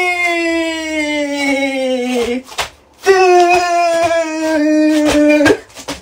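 A voice holding two long wailing notes, each about two and a half seconds and sinking slowly in pitch, with a short break between them.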